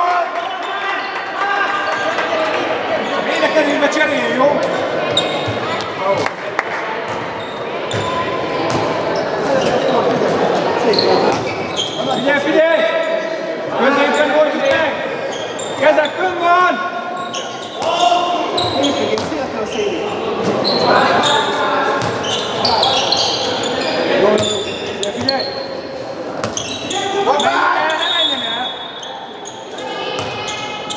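A handball being bounced on a wooden sports-hall floor during play, mixed with players' shouted calls, all echoing in the large hall.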